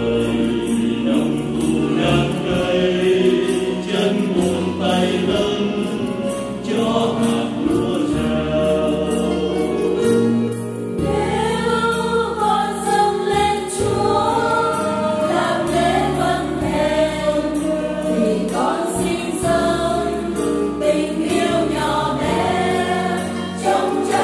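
A choir singing a Vietnamese Catholic hymn in parts over instrumental accompaniment.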